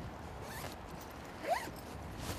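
The zipper of a black padded gear bag being pulled, with one short rising zip about one and a half seconds in.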